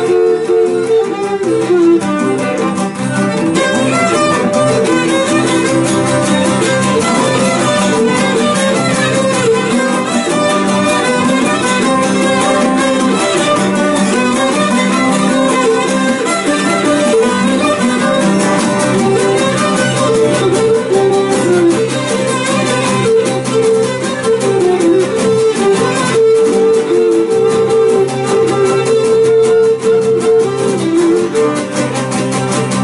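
Small acoustic string ensemble of bowl-back mandolins and a laouto playing a Greek syrtos dance tune, with a busy plucked melody over steady strummed accompaniment.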